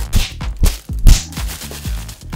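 A fist punching a bread roll in a plastic bag close to the microphone: three hard thumps with the bag crinkling, the third the loudest. Background music with a beat plays underneath.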